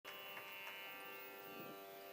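Faint, steady drone of many held notes with a slight buzz, the kind of drone that sets the pitch for Indian classical and devotional singing.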